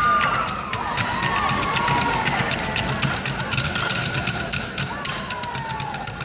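Drumsticks beating a fast rhythm on wooden bar stools, many sharp taps and knocks in quick succession, over the chatter of a crowd.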